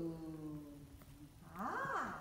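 Human voices sounding drawn-out vowels in turn as a voice exercise. One held vowel trails off about a second in, then another voice swoops sharply up in pitch near the end.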